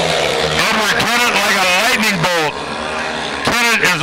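Speedway bikes' 500cc single-cylinder engines at full throttle as a pack of four launches from the start, their notes rising and falling again and again with the revs as they accelerate away.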